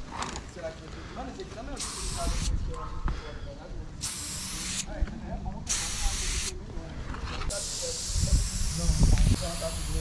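Aerosol spray-paint can spraying in bursts: three short sprays of under a second each, then one long spray from about three quarters of the way in.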